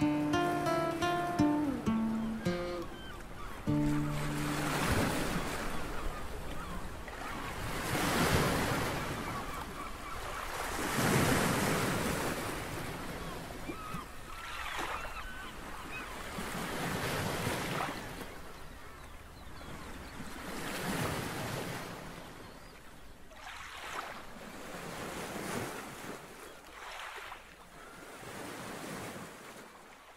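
Small sea waves washing onto a sandy beach, the surf swelling and ebbing every three to four seconds and fading out toward the end. The last few notes of an acoustic guitar ring out in the first seconds.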